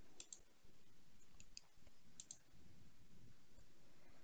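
A few faint computer mouse clicks, some in quick pairs, over a quiet background in the first two and a half seconds.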